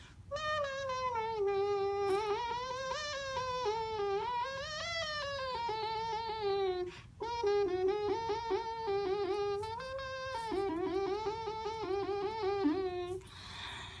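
Beatbox 'kazoo': a kazoo-like hum made by humming outward through the mouth with the lower lip vibrating against the teeth, pitch gliding up and down. It comes in two long phrases with a short break about halfway, and sounds pretty bizarre.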